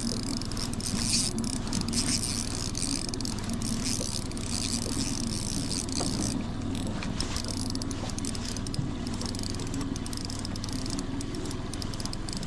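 A boat's motor running steadily at trolling speed, a low even hum, with a hiss of wind over it.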